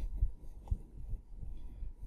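A whiteboard being wiped with a cloth duster: low, uneven thumps and rubbing, with one sharper knock a little past a third of the way in.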